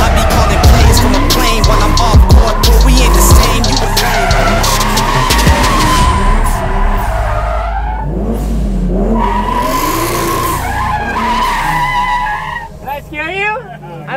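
Nissan 240SX drift car sliding on concrete, its tyres squealing in long wavering stretches that ease off for a couple of seconds in the middle, with the engine revving up and down. A hip-hop track with heavy bass runs underneath.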